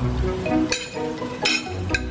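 A metal spoon clinking against a small glass jar: three sharp clinks, each with a brief ring, over background music.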